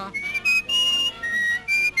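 A whistled tune in the film's music: a quick run of about seven short, high held notes stepping up and down in pitch.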